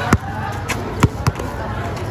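Two basketballs being dribbled on a hard outdoor court: several sharp bounces at uneven intervals.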